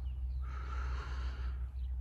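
A man draws one long breath between sentences, over a steady low rumble.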